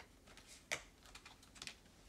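A card being laid down onto a spread of tarot cards: one light click a little under a second in, with a few fainter taps of the cards being handled.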